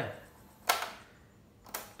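Two sharp mechanical clicks about a second apart from the piano-type transport keys of a Sharp QTY1 cassette boombox, as the fast-forward is engaged and then stopped.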